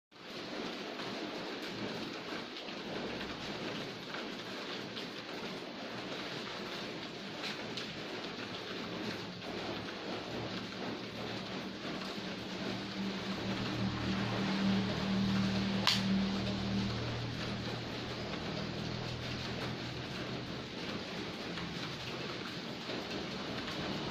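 Steady hiss of rain, with a low humming rumble that swells in the middle and fades again, and a single sharp click about two-thirds of the way in.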